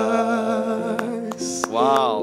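Song ending: a man singing held notes over sustained chords on a Casio electric keyboard, with a short falling sung phrase near the end. A few sharp hand claps, about a second in and again at the end.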